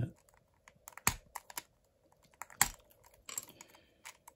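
Sharp plastic clicks and snaps from a speedcube's centre cap being prised off, the loudest snap about two and a half seconds in, then a quick run of small clicks near the end.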